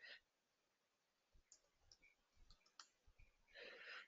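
Near silence with a few faint, scattered clicks of a computer keyboard and mouse as a password is typed and a button clicked, and a soft breath near the end.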